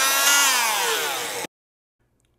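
Electric bone saw running in one short burst as it cuts through the mandible's condylar process, its whine rising and then falling in pitch, cutting off suddenly about one and a half seconds in.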